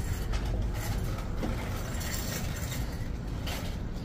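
Steady low rumble of outdoor background noise, with a few faint clicks, picked up by a phone carried along on foot.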